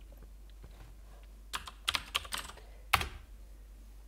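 Keystrokes on a computer keyboard: a quick run of about half a dozen taps typing the command 'claude' at a terminal prompt, then a single keystroke about half a second later that enters it.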